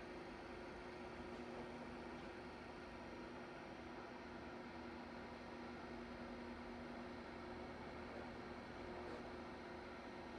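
Faint, steady room tone: a low hiss with a faint, steady hum underneath.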